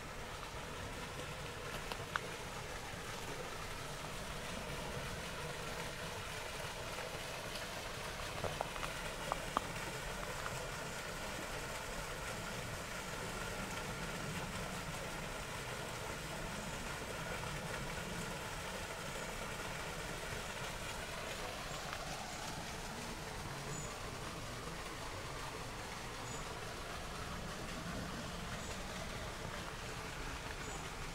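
Quiet outdoor background noise: a steady low rumble with a few light clicks, one about two seconds in and a small cluster about nine seconds in.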